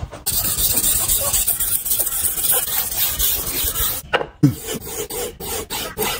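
Steel knife blade scraped in quick continuous strokes across a wet whetstone, a steady rasp. From about four seconds in it becomes separate strokes of the blade on a strop, about four or five a second.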